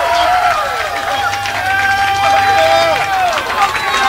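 Club audience cheering, whooping and clapping, with several voices yelling over one another and no band playing.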